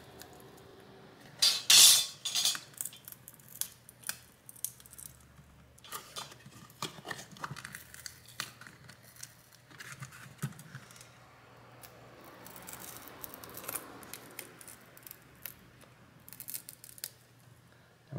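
Pry tools scraping and clicking along the edge of a phone's plastic back cover as its adhesive is worked loose, with a short, loud scrape about two seconds in and scattered small clicks and scrapes after it.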